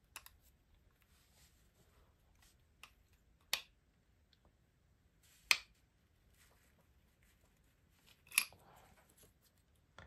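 Five or so sharp, separate clicks and taps of small metal hand tools being handled and set down on a work mat, with quiet between them. The loudest comes a little past halfway.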